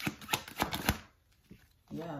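Tarot deck being shuffled by hand: a quick run of crisp card snaps and riffles for about a second, then one more single snap.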